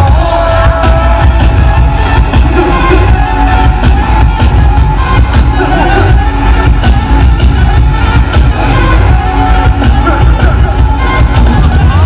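Live band playing loud over a heavy bass, with drums and electric guitar and a voice on the microphone, heard from within the audience with crowd noise.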